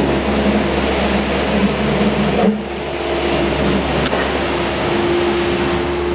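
A loud, steady mechanical drone with a low rumble and a constant hum, broken by a sudden brief drop about halfway through.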